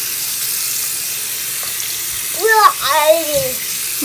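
Tap water running steadily from a bathroom faucet into the sink while hands are rinsed under the stream. A voice cuts in briefly in the second half.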